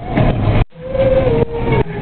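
A girl's singing voice holding one long note over the rumble of a car's engine and road noise inside the cabin, with a brief dropout just before the note.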